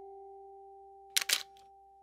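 Camera shutter clicking twice in quick succession, a little over a second in. Under it, a held chime-like music note fades away.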